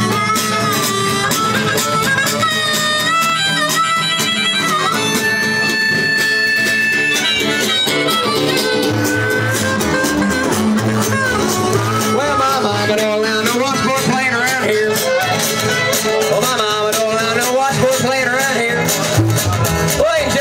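Live acoustic string-band music: a harmonica plays long held and wavering notes over acoustic guitar.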